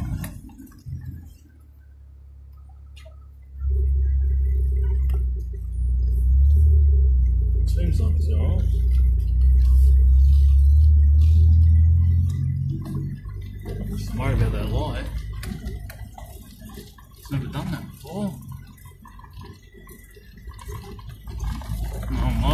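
Car engine and drivetrain heard from inside the cabin on a rough dirt track. A loud, low, steady drone starts suddenly about four seconds in and fades after about eight seconds, followed by quieter knocks and rattles. The car has its engine warning light on, and the driver wonders whether the alternator belts have come loose or it isn't charging.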